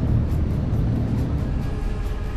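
Low, uneven rumble of wind buffeting the microphone on an open ship's deck above the sea, with soft background music coming in near the end.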